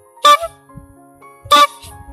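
Original chrome squeeze-bulb horn on a vintage MMVZ (Minsk) bicycle, honked twice with short, bright toots about a second and a quarter apart.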